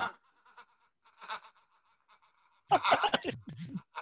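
A man laughing at his own joke: a faint, held-back chuckle at first, then a louder laughing "uh" in the last second or so.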